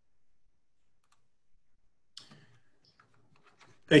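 Near silence with a few faint clicks about two seconds in, then a man starts to speak right at the end.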